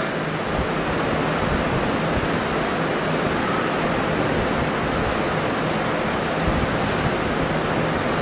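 Steady, even hiss of background noise, with no speech and no distinct events.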